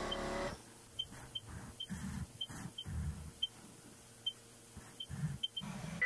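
A CNC milling machine's axis drives whine with a steady multi-tone hum that stops about half a second in. Faint low bumps and small ticks follow as the machine positions for its next operation.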